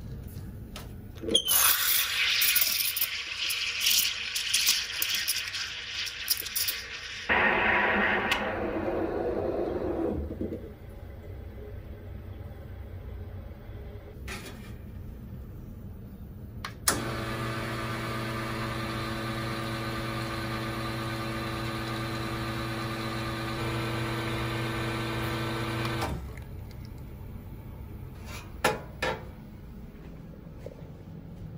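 Commercial espresso machine. For the first several seconds there is loud steam hissing that drops to a lower rushing sound and fades out. Later a click is followed by the pump's steady hum for about nine seconds as a shot is pulled.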